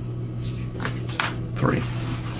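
Light Seer's Tarot cards being swept up from a fanned spread on a table and squared into a deck: a few short rustles and taps of card stock.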